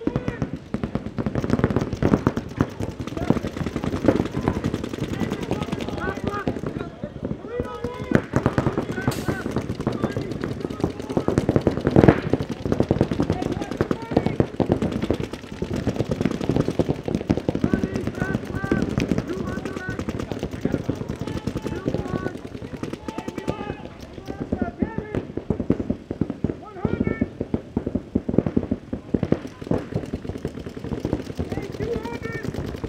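Paintball markers firing in rapid streams of shots, several at once. Players' voices call out between and over the shots.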